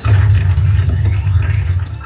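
A loud rushing sound effect with a deep rumble under it, starting suddenly and easing off after nearly two seconds: a segment-transition sting.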